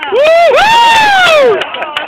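A loud, drawn-out cheering shout from one voice, rising and falling in pitch for about a second and a half, with crowd noise behind it: the audience answering a call to cheer for the act they want to see first.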